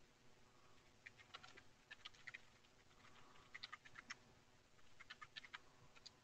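Faint computer-keyboard typing: short runs of quick key clicks, in four small bursts about a second apart.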